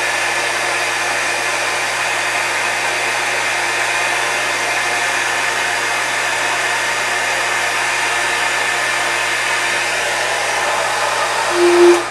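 Handheld embossing heat gun blowing steadily, melting a coat of ultra-thick embossing enamel (UTEE) powder on a paper die cut into a smooth enamel finish; it switches off right at the end.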